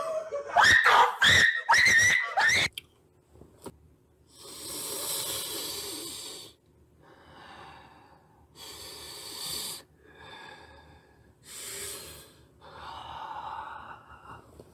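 A young man's breathy, wheezing laughter close to the microphone, in several separate bursts of a second or two each.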